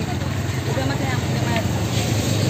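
Motorcycle engine running steadily at low revs, an even low hum, with faint voices in the background.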